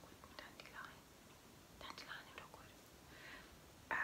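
Faint whispering: a few soft breathy syllables in short groups, with quiet room tone between them.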